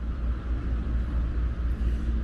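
Steady low outdoor rumble of background noise, heaviest in the deep bass, with no distinct events.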